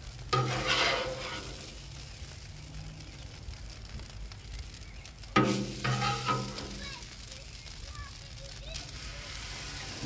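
Steady sizzling of butter and syrup left on a hot Blackstone flat-top steel griddle, with a metal spatula scraping across the griddle twice, once just after the start and again about halfway through.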